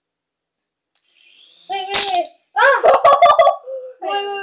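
Near silence for about a second, then a child's wordless vocal sounds, broken by sharp clicks; the loudest click comes about two seconds in, and a cluster of them follows about a second later.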